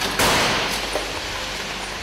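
Ford Endura striking the barrier in a frontal crash test: a sudden loud crash about a fifth of a second in, then a noisy rush of crumpling metal and debris that slowly dies away.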